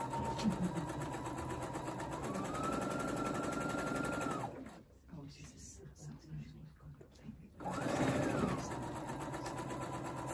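Electric sewing machine stitching a seam. Its motor runs steadily, speeds up with a rise in pitch about two seconds in, and stops at about four and a half seconds. About three seconds later it starts again, revving up briefly before settling into a steady run.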